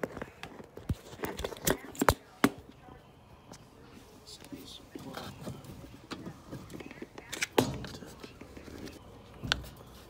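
Hands working a braided stainless dishwasher supply line and its brass fitting under a dishwasher: sharp clicks and knocks, several in the first two and a half seconds, another about seven and a half seconds in and one near the end, with rustling between.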